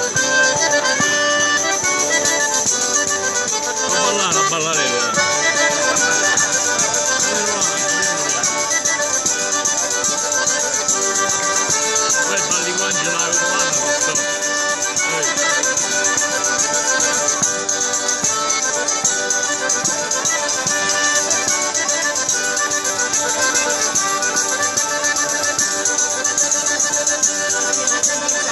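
Diatonic button accordion (organetto) playing a lively traditional southern Italian dance tune, with a tambourine's jingles shaking steadily underneath.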